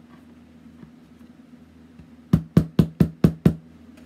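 Small craft hammer tapping six times in quick succession, about four taps a second, starting a little after two seconds in. It is flattening the spread legs of metal brads against the inside of a chipboard box.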